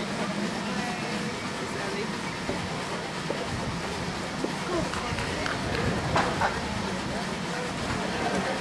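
Indistinct chatter from spectators' voices at a ballgame, with a few louder voices about two-thirds of the way in, over a steady low hum.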